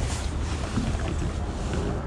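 Wind buffeting the microphone: a steady rushing noise with a deep rumble underneath.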